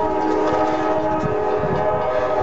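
Norfolk Southern freight locomotive's air horn sounding one long steady blast, a chord of several notes, as the train nears a road grade crossing.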